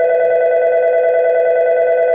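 A loud, steady electronic tone of several pitches sounding together without change, like a telephone dial tone.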